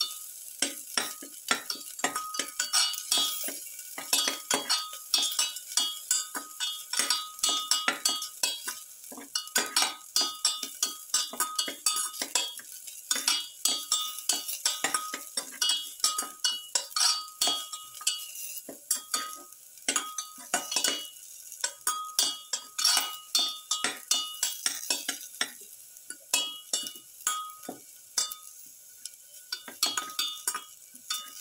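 A spatula stirring and scraping garlic cloves and shallots around a stainless steel pan, with rapid, irregular scrapes and clinks several times a second and the metal pan ringing, over a light sizzle of frying in oil.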